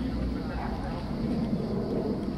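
Outdoor ambience of a football training session: players' voices calling across the pitch, with no clear words, over a low steady hum that stops about half a second in.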